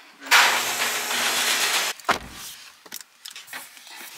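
A steady rushing noise for about a second and a half that cuts off suddenly, then a single low thud of a car door shutting, followed by faint clicks and rustling.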